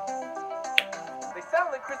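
Background music of steady held notes over a light ticking beat, with a single sharp finger snap a little under a second in; a voice comes in near the end.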